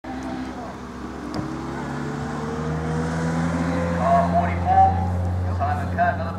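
A racing car's engine running, its pitch climbing slowly and its sound growing louder over the first few seconds, over a steady low drone. A commentator's voice comes in during the second half.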